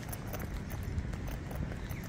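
Footsteps on stone paving at an even walking pace: faint, regular short taps over a low outdoor background.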